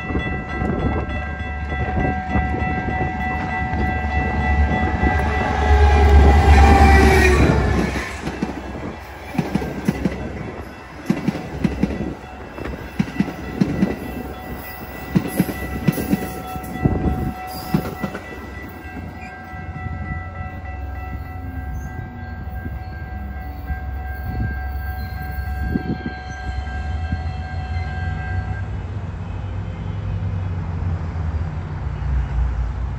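Metra commuter train passing through a grade crossing: the horn sounds over a loud rumble as it approaches and drops in pitch as the locomotive goes by about seven seconds in. The cars then clack over the rail joints for about ten seconds as the train passes.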